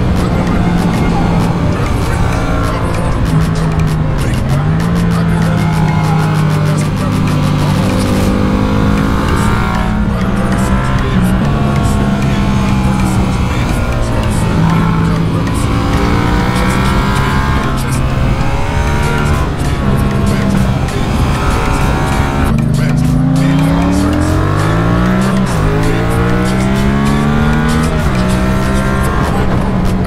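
Yamaha MT-07's parallel-twin engine heard from the rider's seat, running at steady revs through bends with shifts in pitch, under a layer of wind noise. About two-thirds of the way through the revs drop, then climb in several rising sweeps as the bike accelerates through the gears.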